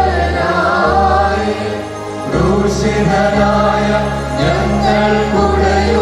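Choir singing a Holy Qurbana liturgical hymn, with steady sustained low notes held under the voices and changing every second or two.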